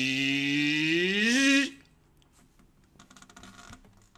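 A man's long drawn-out wordless vocal sound, held low and then sliding up in pitch before cutting off about a second and a half in, followed by faint rustling and clicks.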